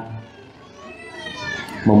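A faint high-pitched young child's voice rising and falling in pitch, well below the level of the lecture.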